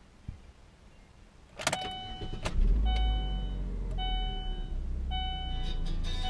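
2008 Chevrolet Aveo5 engine starting: a click and a brief crank about a second and a half in, then the engine catches and settles into a steady idle around 1000 rpm. A dashboard warning chime repeats about once a second over it.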